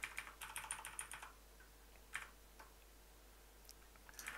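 Computer keyboard typing, faint: a quick run of keystrokes for about a second, then a few single key presses spaced out.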